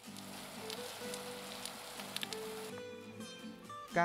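Water spraying from a garden hose in a steady hiss, which cuts off about two and a half seconds in, under background music with long held notes.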